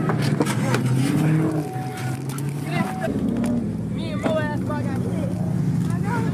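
Car engine running and revving, its low pitch stepping up and down, with people talking and shouting over it.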